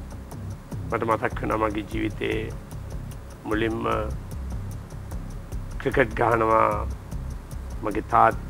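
A man speaking in a few short phrases with pauses between them, over a quiet background music bed with a steady, clock-like ticking.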